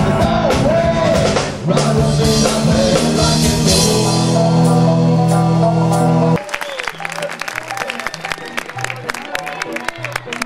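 Live street rock 'n' roll brass band playing loud, with electric guitar, drum kit, trombone and singing. About six seconds in the full band cuts off suddenly, leaving a bass line under the crowd's hand-clapping.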